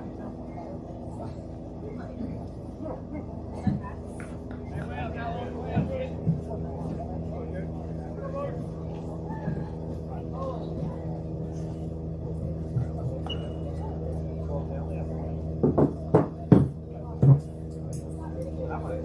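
Baseball-field ambience: a steady low hum under scattered distant voices of players and spectators, with a few short loud shouts or calls near the end.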